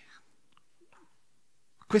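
Near-silent pause with a faint breath at the start, then a man's voice starts speaking near the end.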